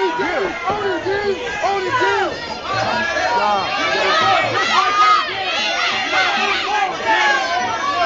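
Fight crowd shouting and yelling, many voices overlapping with no single voice standing out.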